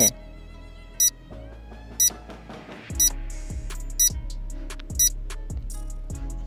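Background music with a countdown timer ticking once a second, five ticks in all; a low pulse joins the music about halfway through.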